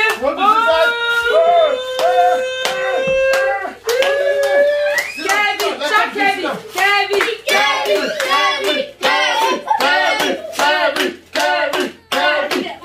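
Hands clapping in quick rhythm alongside excited, sing-song voices. A long held vocal note comes first, then rapid repeated voiced syllables with the claps over the second half.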